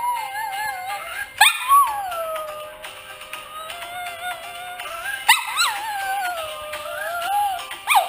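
Small dog howling along to music: long wavering howls, each opening with a sharp upward yelp, one starting about a second and a half in and another about five seconds in.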